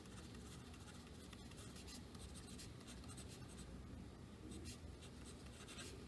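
Faint scratching of a pen writing on paper, in many short strokes.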